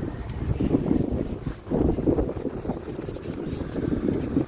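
Wind buffeting the microphone: a low, irregular rumble that swells and dips in gusts.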